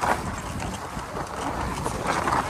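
Skis sliding and scraping over snow, with a sharp knock at the start and a run of small clicks and clatters, and faint voices from a waiting crowd.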